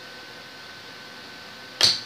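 A single short, loud swish near the end, as a small home-etched copper circuit board is put down and slid across a sheet of paper on a wooden workbench; before it, only faint room tone.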